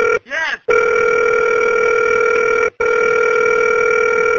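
Telephone line tone as a call is placed back: a steady electronic tone in stretches of about two seconds, separated by brief breaks.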